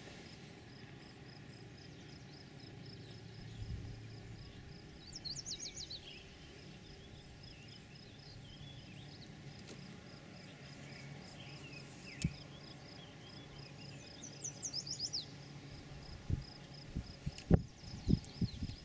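Quiet open-air ambience: an insect chirping in a steady fast pulse, a bird singing a quick run of high notes twice, and a faint low rumble of distant thunder that swells about four seconds in. A few sharp knocks near the end.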